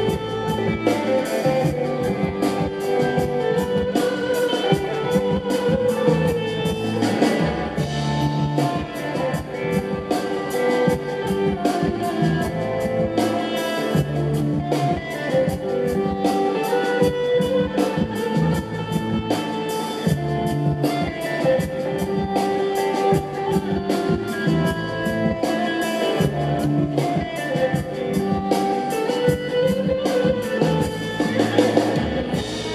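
Live band playing an instrumental passage on electric bass guitar and lead electric guitar over drums, with a steady beat.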